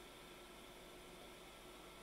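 Near silence: faint steady room hiss with a low hum.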